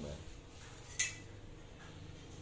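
One sharp metallic clink about a second in as a steel kitchen knife is picked up from beside a cleaver, with faint handling noise around it.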